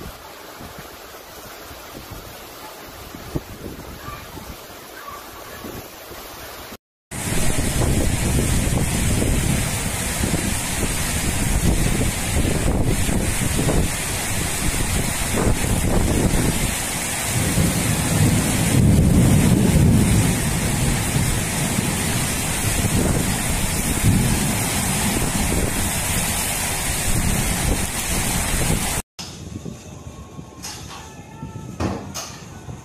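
Thunderstorm wind and heavy rain: a steady rush for the first seven seconds, then, after a short break, a much louder rush, with a low rumble swelling and fading around the middle.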